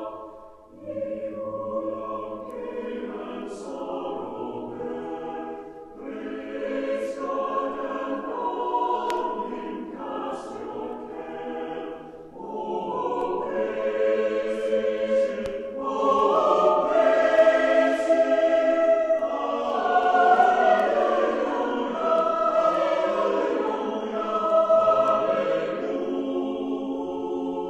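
Choir singing in several parts, in long phrases with short breaks between them, growing louder in the second half.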